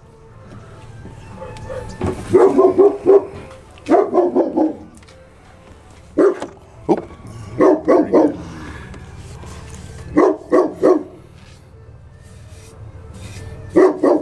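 A dog barking in short bouts of one to several barks, coming every couple of seconds, over a faint steady low hum.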